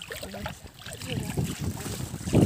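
Wind buffeting the microphone in irregular low rumbling gusts that start about a second in, after a brief voice at the start.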